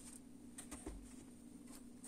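Faint clicks and a soft knock of a plastic measuring cup being handled and lifted off a wooden workbench, over a steady low hum.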